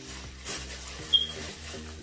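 Plastic shopping bags rustling and crinkling as items are pulled out of them, with a brief high-pitched chirp about a second in.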